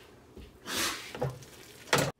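Hands pressing and shaping soft mashed potato on a metal baking sheet: soft squishing and rubbing, with a short sharp click near the end.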